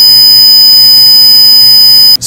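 Computer speaker sounding a loud, very constant high-pitched tone. The RTX real-time extension on Windows is toggling the speaker port every 100 microseconds. The tone stays perfectly even, the sign that every timer tick is being met on time.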